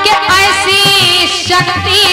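A woman singing a Hindi devotional kirtan line with wavering, ornamented pitch, accompanied by a harmonium's held reed tones and tabla strokes.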